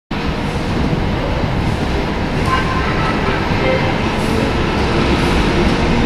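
ČKD class 730 'Ponorka' diesel locomotive running as it approaches along the track, a steady low rumble of engine and wheels that grows slightly louder.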